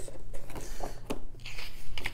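Paper and card rustling and crinkling in irregular bursts of small clicks as a rulebook and loose printed sheets are handled and shuffled, over a steady low hum.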